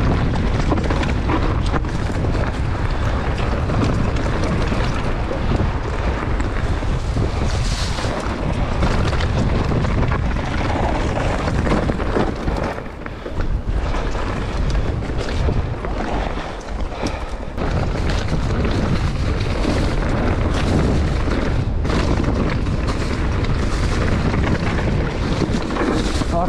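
Wind buffeting the microphone of a body-mounted action camera on an e-mountain bike riding fast down dirt singletrack, with tyre noise and a stream of rattling knocks from the bike over rough ground. It eases off briefly about halfway through.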